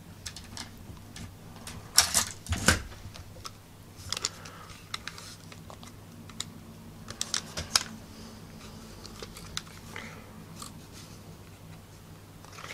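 Scattered small plastic clicks and taps from handling a personal cassette player and opening its battery compartment, the loudest two about two seconds in. A faint low hum sits underneath.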